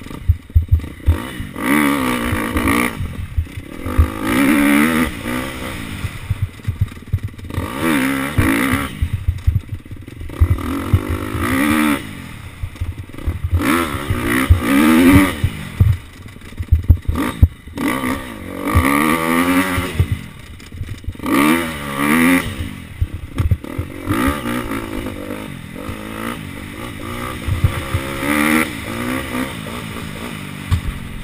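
Dirt bike engine revving up and falling back over and over, a rise every two to three seconds as the rider opens the throttle out of each corner and shuts it going in. Short knocks and rattles from the bike over rough ground run underneath.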